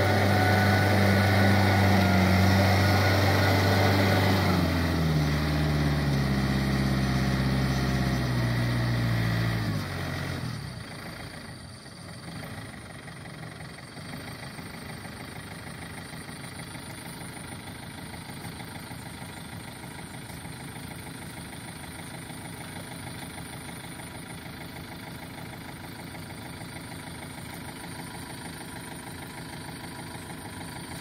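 Yanmar diesel tractor engine running at high revs with its rotary tiller, then slowing in steps from about five seconds in and dropping to a quieter steady idle just after ten seconds, where it stays with the tractor standing.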